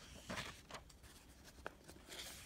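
Faint rustle of workbook paper pages being turned and pressed flat by hand, with a short sharp click near the end.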